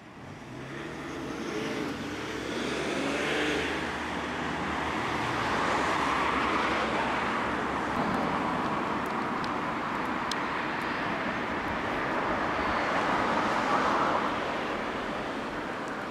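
Road traffic: vehicles passing by, the noise swelling over the first couple of seconds and staying up, with an engine's low hum in the first few seconds.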